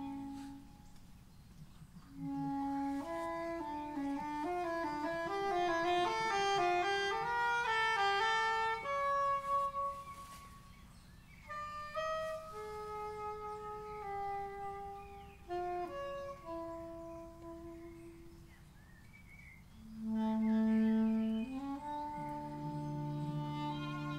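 An unaccompanied woodwind solo in a jazz-influenced chamber piece. It starts with fast runs of notes climbing and falling, then moves to slower, longer notes, and ends on a loud low note near the end.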